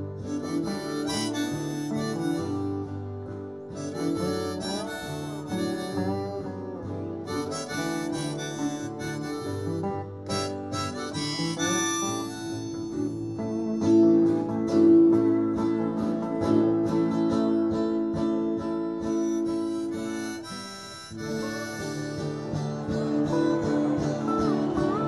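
Harmonica solo over strummed acoustic guitar and a backing band, played live. The harmonica holds long notes that are loudest about two-thirds of the way through.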